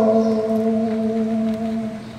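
A man's voice holding one long sung note into a microphone at a steady pitch, fading near the end.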